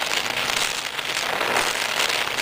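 Gas welding torch flame hissing steadily as it heats a dent in a steel two-stroke expansion chamber.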